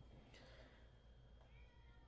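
Near silence: room tone, with a faint, short wavering call about one and a half seconds in, a cat's meow.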